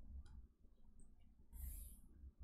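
Near silence: room tone with a faint click about a quarter second in and a soft hiss near the end.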